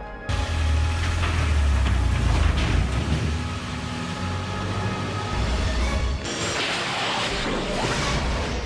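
A DeLorean DMC-12's engine starting and the car pulling away, a deep rumble that comes in suddenly and gives way to a brighter rushing sound about six seconds in, with music over it.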